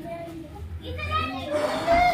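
Children's voices calling out as they play, building to a loud shout near the end.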